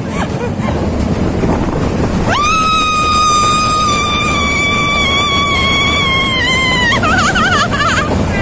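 A woman's long, high scream on a roller coaster, held for about five seconds from a couple of seconds in and sagging slightly in pitch. Near the end it breaks into wavering shrieks. Under it runs the steady rumble and rush of the moving ride.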